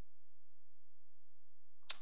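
A pause in the talk: only a faint, steady low hum of background room tone, with a short sharp sound near the end as speech starts again.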